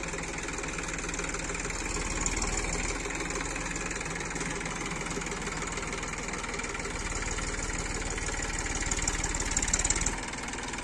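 Massey Ferguson 241 DI tractor's three-cylinder diesel engine running steadily as the tractor works its rear-mounted hydraulic loader bucket into a dung pile.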